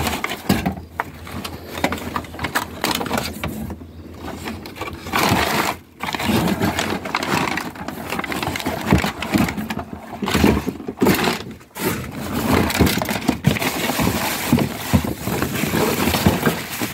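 Gloved hands rummaging through rubbish: plastic bags and paper crackling and rustling, with irregular knocks and scrapes of hard plastic from a discarded printer being handled.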